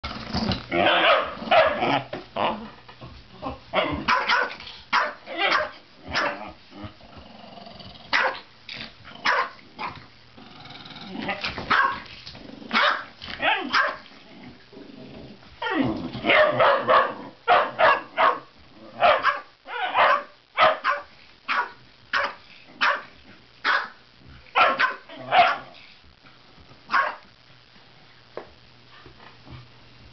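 Two dogs barking and growling at each other in play: many short, sharp barks in clusters with brief pauses between them.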